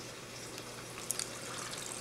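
Faint, steady trickle of a reef aquarium's circulating water, with a couple of small ticks a little past one second in.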